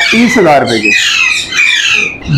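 Young parrots squawking over and over, a run of short wavering calls.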